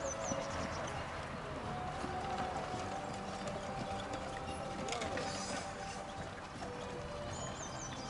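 Hoofbeats of a pair of Lipizzaner carriage horses trotting on grass, drawing a carriage, over background music.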